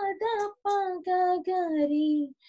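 A woman singing Indian classical sargam (sa, re, ga, pa) unaccompanied over a video call: a run of short held notes, the last stepping down in pitch and held longer.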